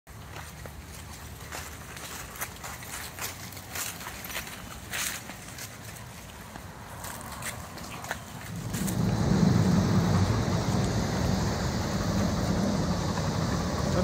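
Soft footsteps and rustling in grass and dry leaves as a person walks with leashed dogs, with scattered light clicks. About nine seconds in, a loud, steady low-pitched noise sets in and covers them.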